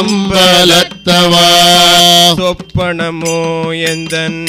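Voices singing a Tamil devotional bhajan to Shiva over a steady drone, with a long held note in the middle and a few hand-drum strokes.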